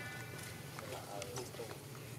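Short high-pitched squeals from a baby macaque as an adult grabs it, with a lower, briefer call a little after a second in, over light taps and rustles in dry leaves.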